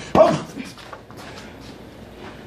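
A single sharp punch exchange in boxing gloves: a glove impact together with a short, loud exertion shout from a boxer, just after the start, followed by a few faint knocks.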